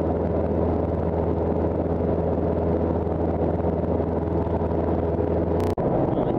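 Cessna 172's piston engine and propeller heard from inside the cabin in cruise flight, a steady drone. Near the end it is broken by a sharp click and a momentary dropout.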